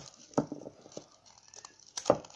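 A few light knocks and clicks from a green plastic bowl holding a block of ice as it is gripped and worked to free the ice. The loudest knock comes about half a second in.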